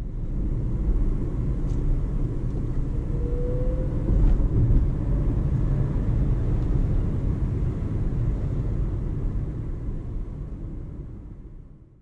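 Road and tyre rumble inside the cabin of a Dacia Spring electric car driving at town speed, with a faint rising whine about three seconds in as it gathers speed. The sound fades out near the end.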